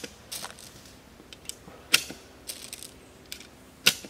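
9mm cartridges being pressed one at a time into an MP5 magazine: a sharp metallic click about every two seconds as each round snaps in under the feed lips, with lighter ticks of brass and handling between.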